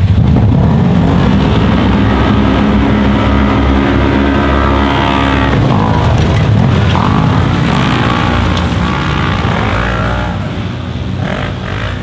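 Several side-by-side UTV engines revving hard and accelerating together in a race start, loudest right at the start. The pitch rises and falls as the machines pull away through their gears.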